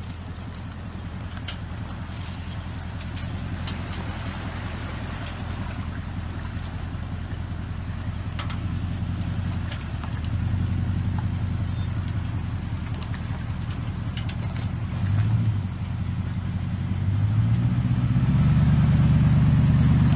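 An engine idling with a steady low hum. It grows louder and steps up a little in pitch around the middle and again near the end.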